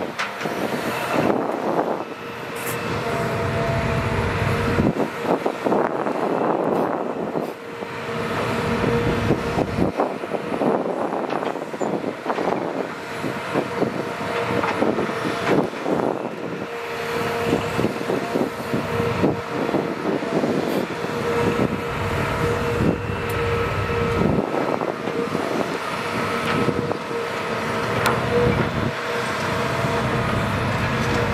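Hitachi Zaxis 200 excavator working: its diesel engine runs under load with a steady hydraulic whine, rising and falling as the arm moves. The bucket scrapes and knocks repeatedly as it digs soil and loads it into a dump truck bed.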